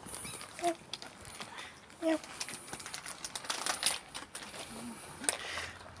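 Black cat giving a few short, quiet meows as it walks up, under light scuffing and clicking.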